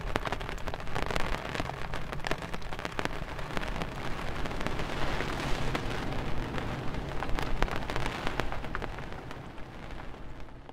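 Rain pattering on a clear plastic umbrella overhead: many sharp drop hits over a steady hiss, starting to fade near the end.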